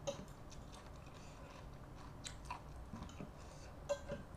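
A metal fork and spoon clinking a few times against a ceramic plate while noodles and vegetables are scooped up, with the sound of chewing.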